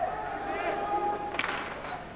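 A TV commentator's long drawn-out vowel over a low arena murmur, then a single sharp crack about one and a half seconds in: a hockey stick striking the puck on a shot.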